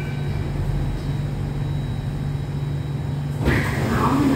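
Steady low hum inside an Alstom Metropolis C830 metro carriage, with a faint steady high-pitched tone above it. About three and a half seconds in, a sudden rush of noise starts as the carriage doors begin to slide open.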